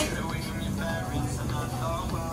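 Busy ramen shop dining room: overlapping chatter of customers over a steady low hum.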